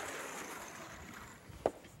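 A soft, steady swishing rub without pitch that fades away over about a second and a half.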